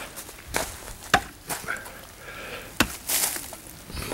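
A few sharp, separate knocks and clicks at irregular intervals, with a short rustle after about three seconds.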